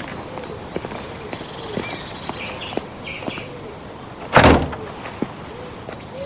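A single heavy door thud about four seconds in, typical of a wooden front door being shut or pulled to. Under it, a pigeon coos over and over in the background.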